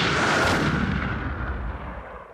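A deep, noisy cinematic impact sound effect that hits at the start and dies away slowly over about three seconds.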